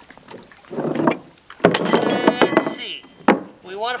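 A metal in-water install tool being slid along the plastic floating dock: a scraping, grinding sound with a faint squeal, set off by a sharp knock just before it and another knock near the end.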